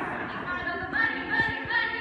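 Female high-school a cappella group singing unaccompanied in harmony, voices settling into long held chords about halfway in.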